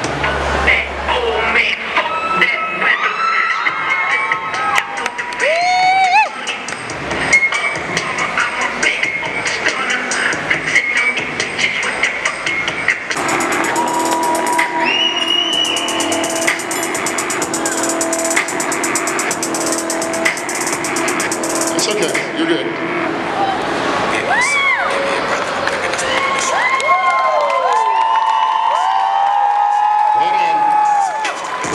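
A crowd cheering and shouting over chatter, with music coming up for several seconds in the middle.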